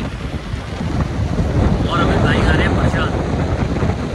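Wind buffeting the microphone at an open car window as a steady low rumble that grows louder about halfway through. A voice is heard briefly in the middle.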